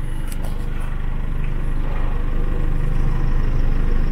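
Car engine idling, a steady low rumble that grows slightly louder toward the end.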